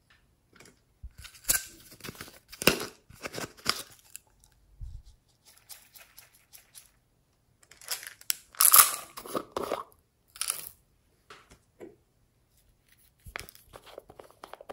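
Small plastic topping containers being handled, opened and tipped out over a bowl of slime, with sprinkles pattering onto it: irregular crackly clicks and rustles in two busy spells, about a second in and again from about eight seconds, the loudest near nine seconds.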